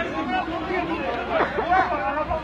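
Several people talking over one another at once, an untranscribed chatter of voices.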